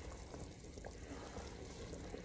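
Faint sound of broth simmering in a pot, with a few soft ticks as chopped kale is pushed off a plastic cutting board into it.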